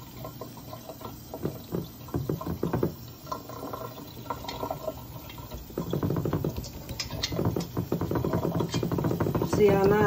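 Wet hands pressing and patting raw kibbeh mixture flat into a glass baking dish: a run of short, soft pats, with voices talking quietly, louder in the second half.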